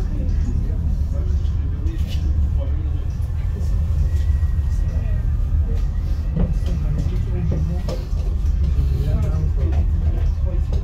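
Steady deep rumble of a cable-car cabin running along its cables, heard from inside the cabin, with faint voices murmuring and a few light clicks.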